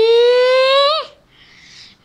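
A child singing one long held note that slowly rises in pitch, then breaks off about a second in.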